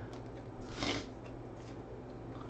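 A trading card being handled and slid into a plastic holder: one short rustling scrape about a second in, over a faint low hum.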